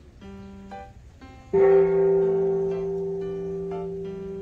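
Background music of plucked string notes. About a second and a half in, a loud low note sounds and rings on, slowly fading.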